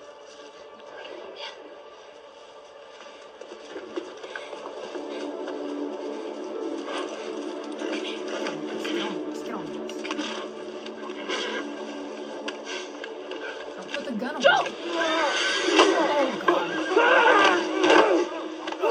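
TV drama soundtrack playing from a television: a musical score of sustained notes that slowly grows louder, joined near the end by louder voices from the scene.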